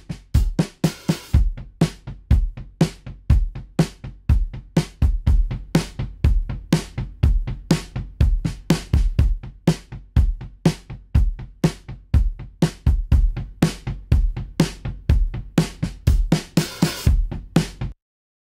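A recorded drum kit groove of kick, snare and hi-hat, played first unprocessed and then through a Teletronix LA-2A optical tube compressor plug-in. Compressed, the snare gains thwack, a little room ambience comes up, the bottom end is smoothed and some sheen is added.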